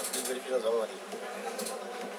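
A steady low buzzing hum, with faint speech heard over it.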